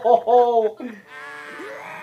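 A voice calls out in a few drawn-out syllables that rise and fall in pitch during the first second, followed by quieter cartoon soundtrack music with a held tone.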